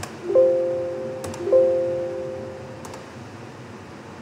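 An electronic chime sounds twice, about a second apart. Each strike is several tones at once that ring and fade away. A few faint clicks come between and after the strikes.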